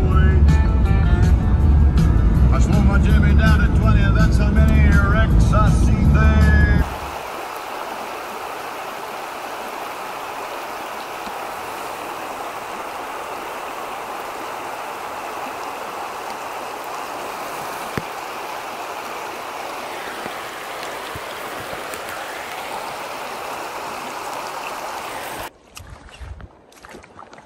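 Music with a sung vocal and heavy bass for about the first seven seconds, which cuts off abruptly. After that comes the steady rushing of river water.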